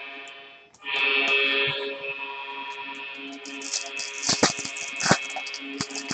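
Background music playing steadily, with the crinkling of a foil trading-card pack being handled and torn open in the second half, two sharper crackles standing out about four and five seconds in.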